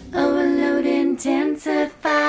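Solo female voice singing unaccompanied, with no instruments under it: one long held note, then a few shorter notes stepping down in pitch.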